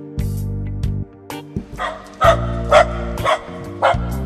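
A dog's voice, sampled into an electronic music track: about five short barks in the second half, over held bass and plucked chord notes.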